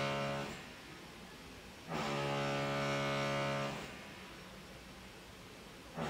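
A neighbour's electric drill heard through the apartment building's walls, running in steady-pitched bursts of one to two seconds: it stops shortly after the start, runs again from about two seconds in, and starts once more at the very end.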